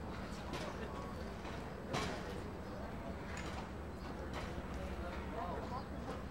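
Rodeo arena ambience: background voices of the crowd and a steady hum, broken by a few sharp knocks, the loudest about two seconds in.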